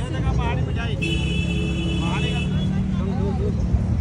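Steady low rumble of road traffic with people's voices around a busy street. A steady high-pitched tone sounds briefly from about one second in.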